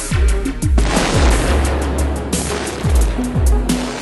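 Hip-hop music with deep, falling bass-drum hits. Over it, from about a second in, a dense crackle and rush of demolition charges firing in high-rise tower blocks.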